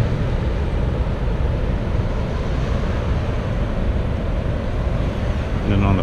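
Wind buffeting the microphone: a steady, fluttering low rumble with a fainter rush above it. A man starts speaking near the end.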